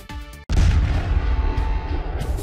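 Background music cuts off about half a second in, and a loud explosion sound effect starts with a deep rumble.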